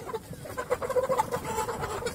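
A flock of chickens clucking, many short calls overlapping.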